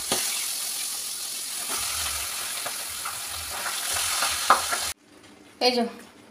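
Pabda fish frying in hot oil in a steel wok, a steady sizzle, with a metal spatula stirring and knocking against the pan. The sizzle cuts off abruptly about five seconds in.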